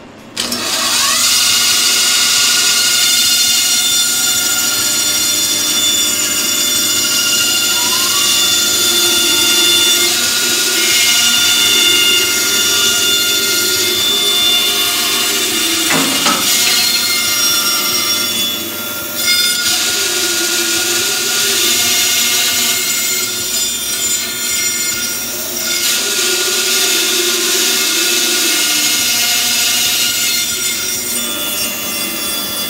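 Bandsaw starting up and then running steadily while its blade cuts a 14-inch circle out of a wooden board on a circle jig. The motor comes up to speed with a short rising whine, then there is the continuous sound of the blade in the wood. One sharp knock comes about halfway through.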